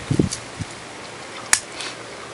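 A short low thump near the start, then a single sharp click or knock about one and a half seconds in, over a faint steady outdoor background.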